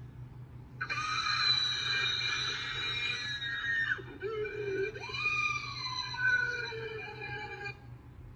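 A cartoon character's long, high-pitched scream in two drawn-out stretches, the first starting about a second in, the second after a short break about halfway and falling in pitch, played through computer speakers in a small room.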